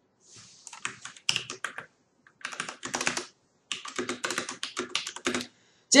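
Typing on a computer keyboard: three quick runs of keystrokes with short pauses between them.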